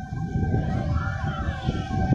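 Distant emergency siren heard as a steady high tone with faint wavering wails, under low wind rumble on the phone microphone.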